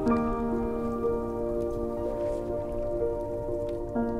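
Slow, calm music of sustained chords, with a new chord coming in at the start and again near the end, over the wash and soft trickling of small lake waves lapping on a pebble shore.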